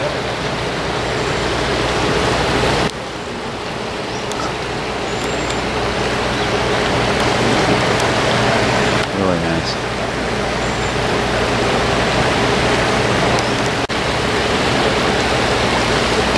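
A shallow, rocky creek rushing steadily over stones, with a steady low hum underneath.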